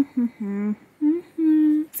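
A woman humming a short tune of several notes, the last one held for about half a second.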